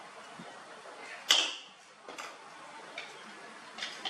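A single sharp clack about a second in, with a brief ringing tail, then a few lighter taps and knocks. These are hard objects (plastic box, wooden slats, a plastic bottle) knocking against each other and the tiled floor as the monkeys clamber over them.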